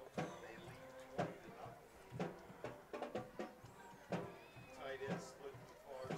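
Faint music with voices mixed in, and sharp knocks now and then, the kind of sound a high school band and crowd make in the stands at a football game.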